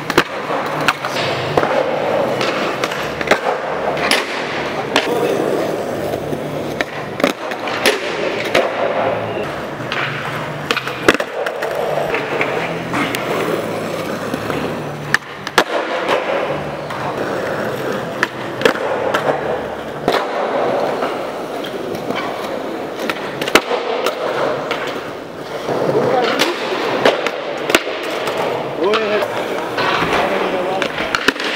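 Skateboard wheels rolling on smooth concrete, with many sharp pops and clattering board landings from flip tricks at irregular intervals.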